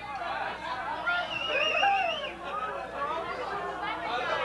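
Several people talking over one another in a crowd between songs, with a high wavering tone lasting about a second partway through.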